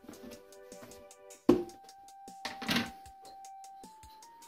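Background music of long held notes that step to a new pitch about a second and a half in and again near the end. A sharp knock about a second and a half in, and a brief rattle a second later, come from a plastic oat container being handled and set down on the worktop.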